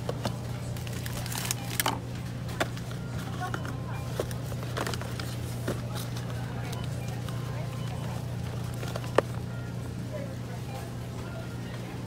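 Supermarket ambience: a steady low hum with scattered light clicks and knocks of cardboard frozen-food boxes being handled, over faint background voices.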